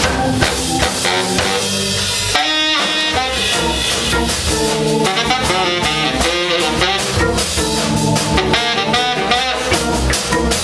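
Live soul-jazz band playing: baritone saxophone over organ, guitar, bass and a drum kit.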